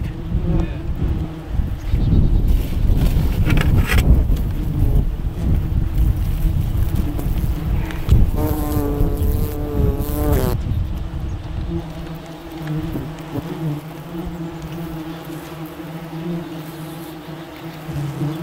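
Disturbed German yellow jackets (Vespula germanica) buzzing around their opened paper nest, a steady hum of many wings, with one wasp passing close and buzzing loudly for about two seconds around eight seconds in. A low rumble runs under the buzzing for the first twelve seconds or so.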